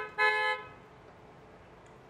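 Car horn tooting twice in quick succession, the second toot slightly longer and ending about half a second in.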